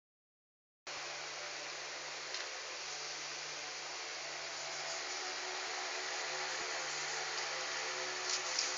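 Steady hiss of background room noise with a faint low hum, beginning about a second in after a moment of silence.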